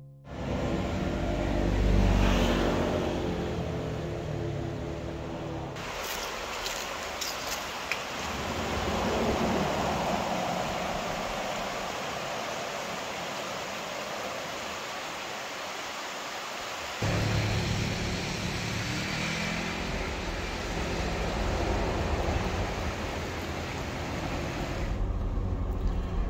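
Engine and tyre noise of a car driving, with a motorcycle passing close by about two seconds in. From about six seconds the low rumble drops away, leaving a steady rushing noise. The car's rumble returns sharply at about seventeen seconds.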